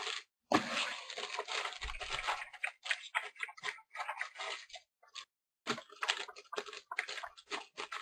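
Cardboard trading-card box being handled on a table, giving irregular rustling, scraping and small clicks. The sound is busiest in the first few seconds, with a short pause past the middle.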